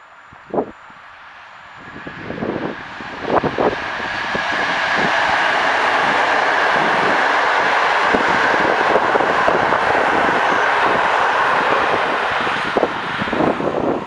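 PKP Class EP09 electric locomotive and its passenger coaches passing at speed: the rumble of the wheels on the rails grows over a few seconds into a steady loud rush with many rapid wheel clicks, easing slightly near the end.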